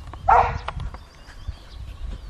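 A single short bark from a herding dog working a small flock of sheep.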